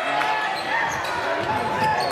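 Basketball bouncing on a hardwood gym floor, several sharp bounces, under the voices of players and spectators in the gym.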